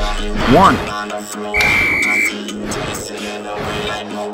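Electronic dance music with one steady, high-pitched beep about one and a half seconds in, lasting under a second: the workout interval timer signalling the end of the rest and the start of the exercise period.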